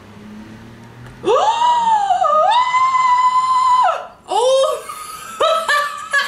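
A woman's long, high-pitched squeal of delight, rising and then held for about two and a half seconds, followed by a shorter squeal and quick giggles near the end.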